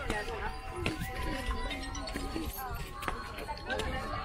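Voices of passers-by mixed with music, with a few held steady notes through the middle.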